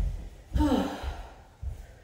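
A person's breathy sigh, falling in pitch, about half a second in, among a few low thuds of footsteps on a hardwood floor.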